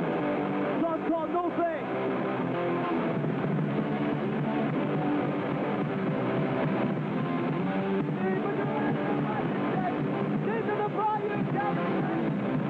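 Hardcore punk band playing live: loud, dense distorted electric guitar music with a voice shouting over it.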